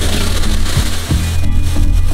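Water poured onto hot charcoal briquettes in a small kettle grill, hissing and sizzling as it turns to steam while the coals are doused; the hiss is strongest in the first second and then eases. Background music plays underneath.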